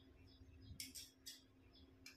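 Near silence, with a few faint, short rustles of cotton-like dress fabric being handled on the floor about a second in, over a faint steady hum.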